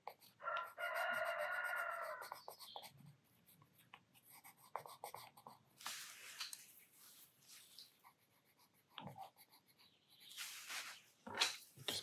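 A rooster crowing once, a single call of about two seconds starting about half a second in, faint as if from outside. Faint scratching of pencil on paper follows.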